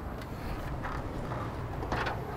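A few faint scuffs and rustles of a polypropylene trailer cover being dragged and of shoes on ladder rungs as someone climbs, over a steady low outdoor hum.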